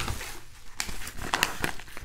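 A yellow padded paper mailer crinkling and rustling as it is picked up and handled, with scattered sharp crackles.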